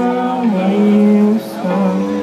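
Indie dream-pop band playing live through a PA: a male voice holds long sung notes, stepping down to a lower note about half a second in, over the band's guitars.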